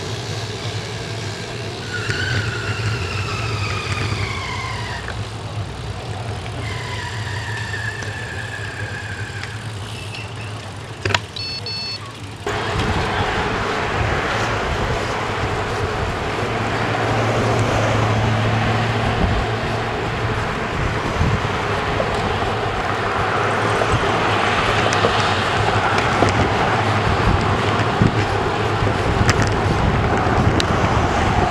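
Wind rushing over the bike-mounted camera's microphone, with car traffic, as a road bicycle rides in a group along a highway. The noise jumps louder about twelve seconds in. Before that, on a quieter street, there are two falling whistle-like tones.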